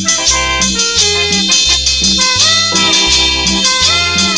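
Instrumental passage of a cumbia: a horn section playing sustained notes over a bouncing bass line and percussion, with no singing.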